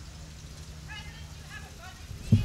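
Faint voices of people talking a little way off, a few short high-pitched snatches in the second half, over a low steady hum.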